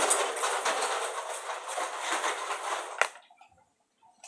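Close rustling and rattling as hands handle a small item, ending in a sharp click about three seconds in.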